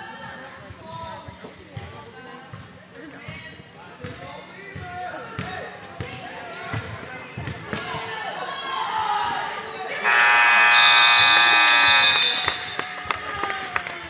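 Gym scoreboard buzzer sounding in one steady blast of about two and a half seconds, about ten seconds in, as the game clock runs out at the end of the period. Before it, a basketball bounces on the hardwood floor under spectators' chatter in the echoing gym.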